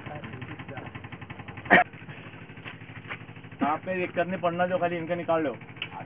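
A vehicle engine running steadily in the background, with a single sharp knock a little under two seconds in. Voices call out for about two seconds, starting about halfway through.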